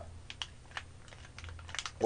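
Faint scattered clicks and light crackles of a thin plastic takeout container being handled, with a quick cluster of ticks near the end, over a low steady hum.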